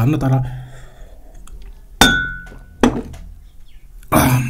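A drinking glass set down on a hard surface about halfway through: a sharp glassy clink that rings briefly, followed a moment later by a lighter knock.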